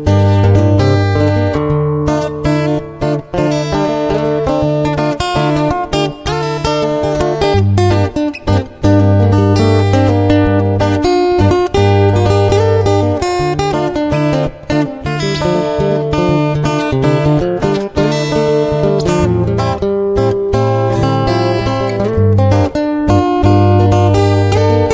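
Background music led by strummed acoustic guitar, with steady chords changing every second or two.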